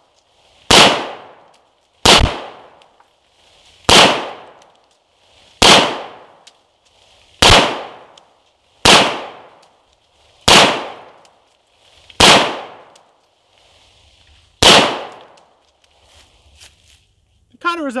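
9mm handgun fired nine times, one shot every one and a half to two seconds with a longer pause before the last, each crack trailing off in a short echo.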